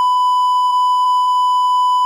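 Censor bleep: a single loud, steady, unbroken beep tone laid over the speech, with all room sound dropped out beneath it, masking words the interviewee is saying.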